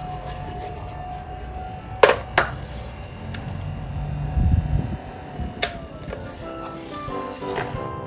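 Background music, with sharp plastic clicks and knocks as a small white plastic tower fan is handled and its switches worked: two clicks about two seconds in, a low thump past four seconds, and another click past five seconds.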